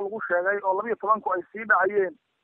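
Speech: a voice narrating news in Somali, talking without pause.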